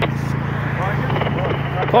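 A steady low engine hum and street noise, with faint voices talking in the background and a short click right at the start.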